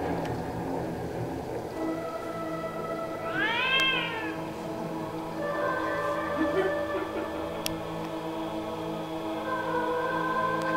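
Horror film soundtrack playing through a room's speakers: music of long held notes, with one wailing cry that rises and falls about three and a half seconds in.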